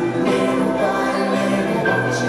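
Live rock band playing a slow song, with sustained chords and choir-like backing voices held over them.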